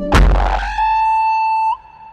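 Electronic sound effect for an animated logo intro: a sudden burst of noise that sweeps downward, then a steady high tone lasting about a second that flicks up in pitch and cuts off near the end.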